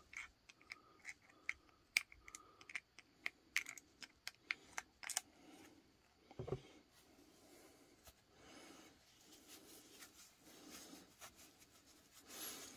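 Faint light clicks and taps of a 5-won coin against a thin plastic cup as the cup is tipped and handled, a dozen or so in the first five seconds, then a single louder knock as the cup is set down, followed by soft rustling of a tissue.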